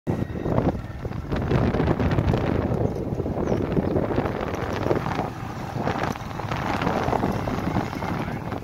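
Wind buffeting the microphone of a camera on a moving vehicle, a dense low rumble that rises and falls unevenly.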